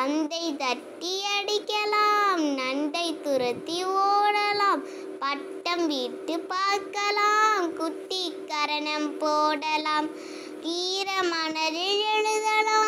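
A child's high voice singing a Tamil children's rhyme in sustained, drawn-out phrases.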